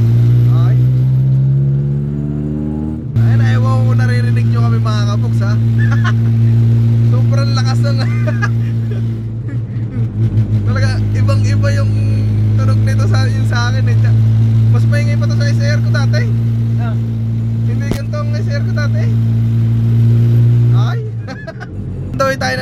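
Honda Civic engine with a loud aftermarket Cherry Bomb–type muffler, heard inside the cabin: the engine note climbs under acceleration for about three seconds, drops abruptly with an upshift, then holds a steady, loud drone while cruising and falls away about a second before the end as the throttle eases.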